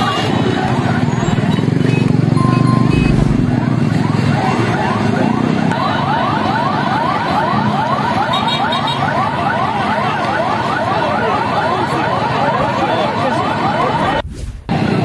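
Street noise with a motorbike engine close by for the first few seconds. From about six seconds in, an electronic siren-like alarm sounds a fast, even run of rising whoops, several a second, over the crowd.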